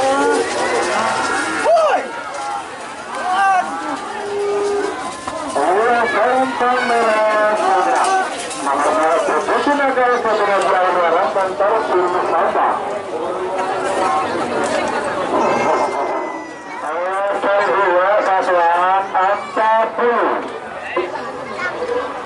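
Men shouting and yelling loudly over one another, with long wavering calls and no clear words.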